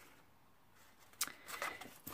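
A page of a Pentalic sketchbook being turned by hand. There is near silence at first, then a light tap about a second in and a soft paper rustle.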